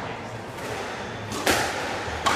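A squash ball struck hard on the serve: one sharp smack about a second and a half in, ringing briefly off the court walls.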